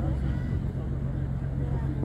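A boat engine idling at the quay with a steady low drone, under the faint chatter of people's voices.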